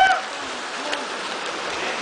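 Steady rush of a mountain river pouring over rocks into a swimming hole, with a brief shout at the start.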